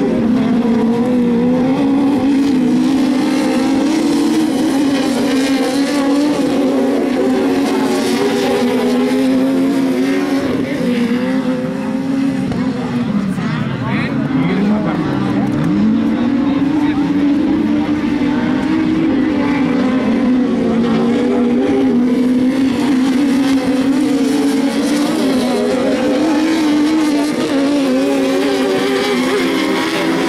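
Engines of 2000cc sprint-class autocross cars racing on a dirt track, held at high revs. Twice around the middle the engine note drops sharply as a car lifts off, then climbs back.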